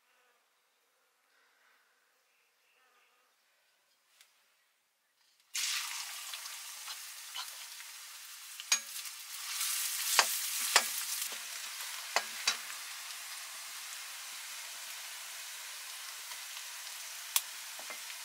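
Chopped onions sizzling in hot oil in a metal karahi, starting suddenly after about five seconds of near silence. A metal spoon clinks and scrapes against the pan several times as the onions are stirred.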